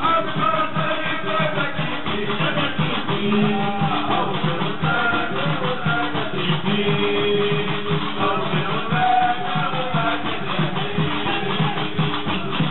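Tunisian stambali music: a plucked gumbri bass lute and clattering iron shqashiq castanets keep a dense, even rhythm under a sung vocal line.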